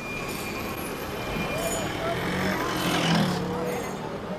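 Busy city street ambience: a steady wash of traffic with indistinct voices in the background.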